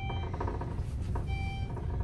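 Elevator car travelling down with a steady low rumble, and two short electronic beeps about 1.3 seconds apart. Each beep marks the car passing a floor.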